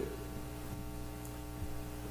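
Steady electrical mains hum with a thin buzz, unchanging at a low level.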